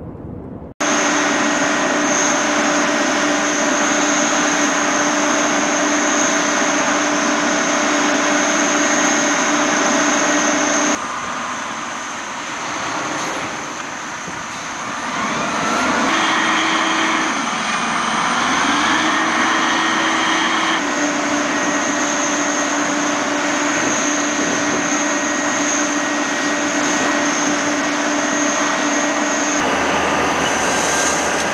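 An airport crash fire truck's engine and fire pump running hard while its turrets spray water: a loud steady roar with a high whine. Near the middle the sound shifts and the engine note dips and climbs again before settling back.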